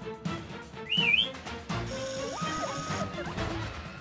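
Background music with cartoon sound effects: a short, warbling whistle that sweeps upward about a second in, then a longer run of gliding electronic tones over a high steady tone.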